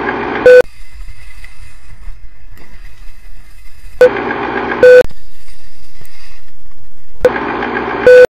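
Old-film countdown leader sound effect: loud bursts about every three to four seconds, each ending in a short beep tone, with a quieter crackling hiss in between.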